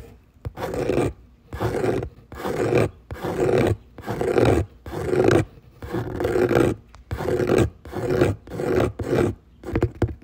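Mouth-made imitation of scratching: about a dozen raspy, breathy strokes at roughly one and a half a second, each about half a second long, voiced in time with fingers miming the motion in the air rather than touching anything.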